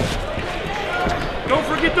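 Boxing hall ambience: murmuring crowd noise with a few dull thuds of gloves landing. A ringside voice starts shouting instructions near the end.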